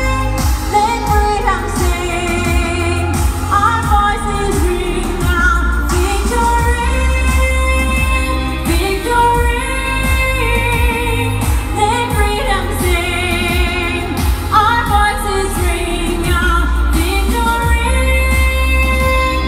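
A song with a man singing long, wavering melodic lines with vibrato over a steady deep bass, sung in what the singer calls his prayer language rather than in English.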